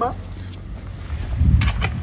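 Handling and movement noise: a low rustling rumble that swells about a second and a half in, with a couple of sharp metallic clicks from a ring spanner being carried.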